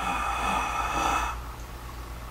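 A man drawing in one long, deep breath, heard as a steady airy hiss that stops a little over a second in. It is the slow inhalation phase of a costodiaphragmatic breathing exercise, filling the lungs and expanding the rib cage.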